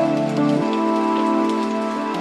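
Slow chill-out lounge music: sustained synth pad chords that change about half a second in, over a soft rain-like patter.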